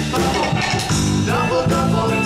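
Live band music from guitars, accordion and drums playing a song with a steady beat.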